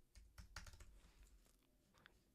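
Faint computer keyboard typing: a quick run of key clicks as a short phrase is typed, stopping shortly before the end.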